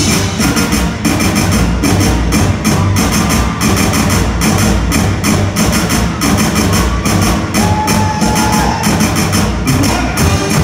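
A school brass band's music in a concert hall: a driving drum beat with heavy bass, and a single note held for about a second near the end.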